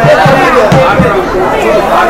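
Crowd chatter: several people talking over one another at once, with no single voice standing out.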